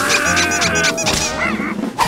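Cartoon sound effect over the score: a held pitched note of about a second, followed by a few short sliding tones.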